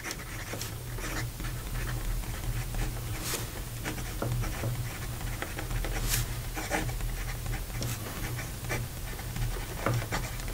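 Medium steel nib of a Schon DSGN Pocket Six fountain pen scratching across paper while a sentence is written, in short irregular strokes over a steady low hum.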